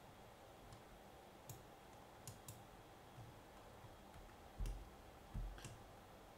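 Faint, scattered computer mouse clicks over near-silent room tone, with two duller knocks near the end.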